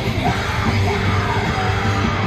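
A live band playing heavy rock, with a vocalist yelling into the microphone over electric guitar and drums.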